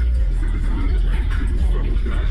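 Music with a heavy, steady bass and a voice over it.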